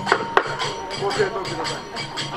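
Two sharp wooden clacks, about a quarter second apart near the start, from the gongen lion-head's wooden jaws snapping shut as it bites a spectator's head, the customary biting for protection from illness. Kagura music of flute and drum carries on underneath.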